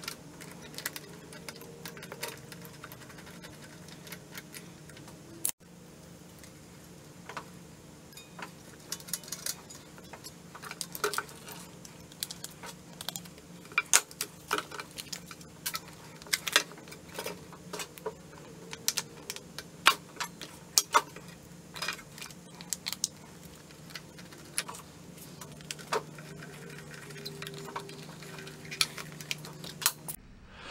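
Scattered small clicks and clinks of metal and plastic parts being handled and seated as a carburetor and its plastic air cleaner base are fitted back onto a small engine, over a steady low background hum.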